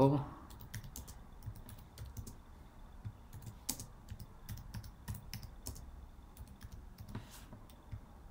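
Typing on a computer keyboard: a run of irregular, quick key clicks as a short sentence is typed.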